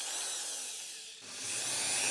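Black & Decker corded electric drill spinning a grey cylindrical abrasive bit against the wooden violin neck: a high motor whine with a grinding, sanding hiss that grows fuller and louder about a second in. The bit's grit is too fine to take off much wood.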